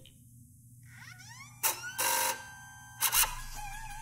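Electronic sound effects: a few rising chirps about a second in, short bursts of hiss, then a steady wavering tone near the end.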